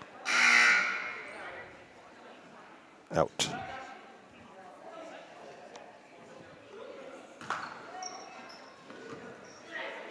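A horn or buzzer sounds for about a second, then a basketball bounces a few times on the hardwood court over the steady hubbub of the gym.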